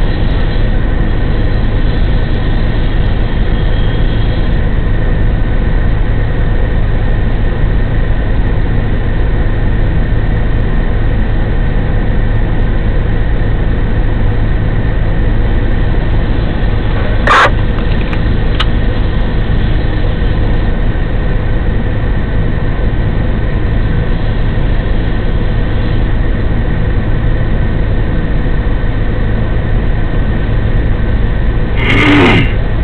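Vehicle engine running steadily: a constant low drone with an even hum. One sharp click sounds a little past halfway.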